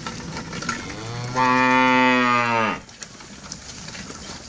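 A zebu cow in a herd mooing once: one long call of nearly two seconds, starting about a second in, rising into a steady held note and dropping off at its end.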